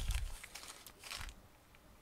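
Plastic shipping mailer and packing crinkling and rustling as hands lift and grip it, fading out after about a second.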